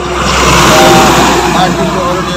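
A large goods truck passing loudly on the road. Its noise swells to a peak about a second in and then eases off.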